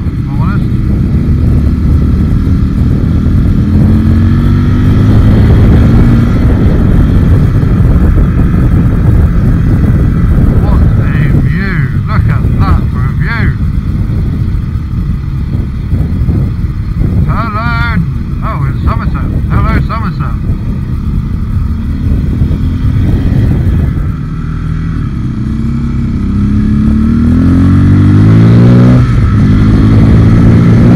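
Enduro motorcycle engine running on the move with wind rush, its pitch rising as it accelerates a few seconds in and again near the end.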